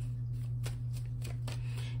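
Tarot deck being shuffled by hand, a scatter of soft card clicks and slides, while a clarifying card is drawn. A steady low hum runs underneath.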